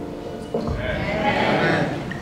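The last notes of the accompaniment fade, and from just under a second in a congregation applauds, with a few voices among the clapping.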